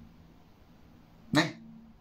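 A pause in a man's speech: faint room tone, then one short, drawn-out spoken syllable about one and a half seconds in.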